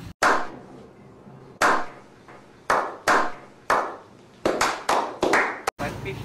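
A series of about ten sharp, clap-like hits, each dying away quickly; widely spaced at first, then coming faster toward the end.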